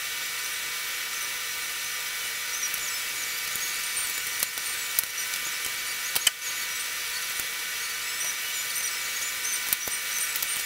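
Steady high hiss, with a few light clicks and rustles from wires and electrical tape being handled.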